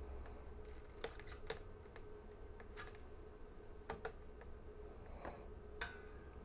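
Faint, irregular clicks and ticks of an electric guitar string being wound onto an Epiphone Les Paul tuner with a hand string winder, the wire rattling against the tuner posts and headstock. A faint steady hum sits underneath.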